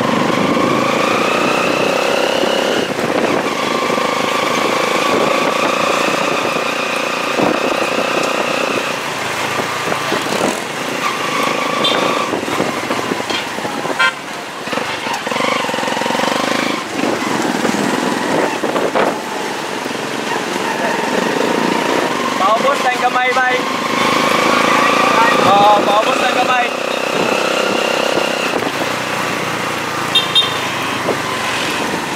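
Street traffic heard from a moving vehicle: motorcycle-type engines running, with long held engine tones that rise and fall slowly as speed changes, and voices at times.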